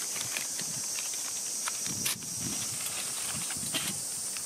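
Paper being crumpled and handled by hand: irregular crackles and rustles, with a sharper crackle about halfway and a cluster near the end, over a steady high hiss.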